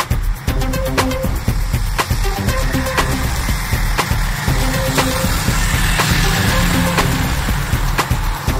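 Electronic dance backing music with a steady beat.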